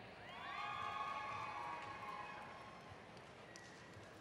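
Faint cheering from a few audience members in a large hall: held voices that rise in pitch at the start and fade out over about two seconds.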